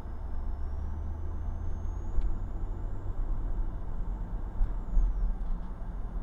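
Steady low rumble of a car driving, road and engine noise heard from inside the cabin through a dash camera's microphone.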